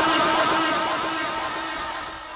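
A man's voice holding one long sung note that slowly fades away, with a steady faint high tone coming in about halfway.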